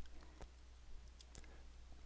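Near silence with a steady low hum and a few faint clicks: one about half a second in and two more past the middle.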